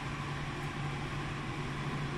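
Steady hum of a UV curing lamp's water-cooling control box running, a constant low tone under an even hiss.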